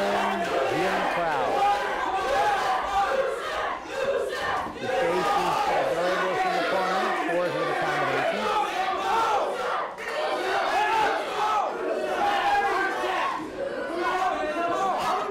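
Boxing crowd shouting and yelling, many voices at once. A single lower man's voice stands out for the first half before fading into the rest.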